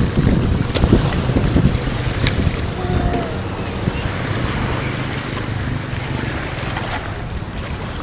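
Wind buffeting the phone's microphone, with the rush of sea surf behind it and a couple of short clicks in the first few seconds.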